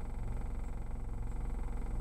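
Car engine idling while stopped, a steady low rumble heard from inside the cabin, with a faint steady high-pitched whine above it.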